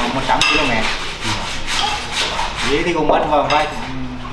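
A person's voice repeating a count in a sing-song way, over repeated scraping and rubbing noises.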